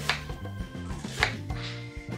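Kitchen knife chopping an onion on a plastic cutting board: two sharp knife strikes about a second apart. Background music plays underneath.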